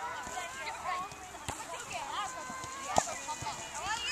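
Many children's voices calling and chattering together, indistinct, with sharp thuds of soccer balls being kicked on grass, the loudest about three seconds in.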